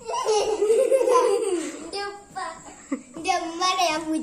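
Children's voices at play: a long, wavering drawn-out vocal sound from a child, then short bursts of chatter and giggling.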